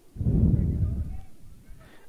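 A low, muffled rumble on the microphone that starts just after the start, holds for about a second and fades out.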